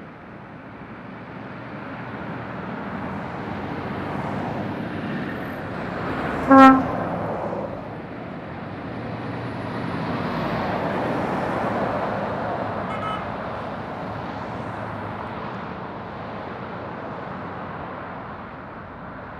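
Road traffic passing on a dual carriageway, building to a peak as a Scania articulated truck hauling a shipping container passes close by. About six and a half seconds in, a vehicle horn gives one short, loud toot.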